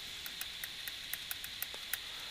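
Stylus writing on a tablet screen: a run of faint, quick ticks and taps, about five a second, over a steady hiss.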